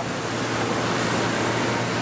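Steady rushing background noise of a large factory floor, likely ventilation and machinery, with a low steady hum underneath.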